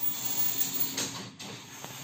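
Knitting machine carriage pushed along the needle bed by its DIY motor drive: a steady hiss and whir, with a click about a second in.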